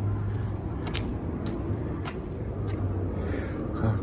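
Steady low hum of outdoor city background noise, with a few faint ticks.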